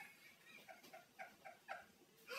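Faint, quiet giggling: a quick run of short pitched 'ha' sounds, several a second.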